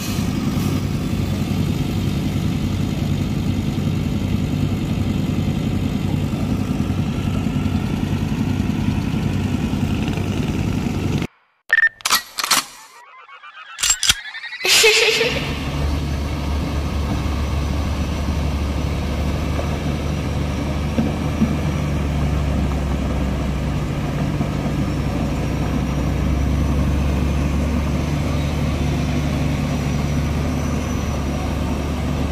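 Heavy diesel engine of a MAN 540 heavy-haul truck running steadily. About eleven seconds in the sound breaks off briefly with a few sharp clicks, then the engine continues with a deeper hum.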